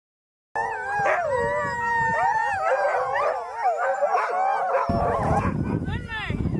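A pack of sled huskies howling together in a chorus of many overlapping, wavering howls, starting abruptly about half a second in. Near the end a low rumble comes in as the howls die away.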